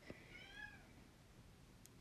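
A cat meowing faintly in the background: one short meow about half a second in that rises and falls in pitch. He is calling to be let into the room.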